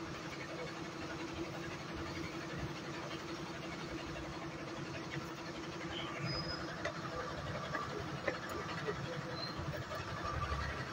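Steady outdoor background noise with a low, even hum and a few faint scattered clicks and knocks.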